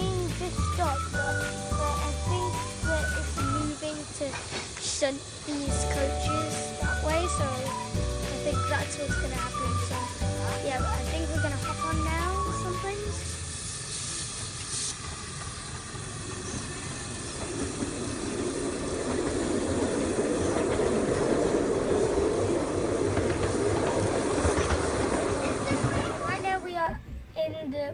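Background music with a steady beat for the first half, fading out; then a narrow-gauge steam train runs past, a steady rush of noise that grows louder toward the end.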